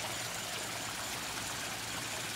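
Small pond waterfall: water trickling steadily over rocks into a koi pond.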